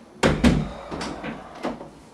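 A wooden interior door being handled: a sharp knock about a quarter second in and another hit just after, followed by a few smaller clicks and knocks of the door and its latch.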